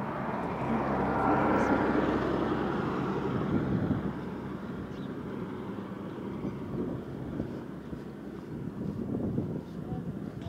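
A water tanker truck's diesel engine and tyres passing close by, loudest about two seconds in and fading away by about four seconds, leaving a lower steady road noise.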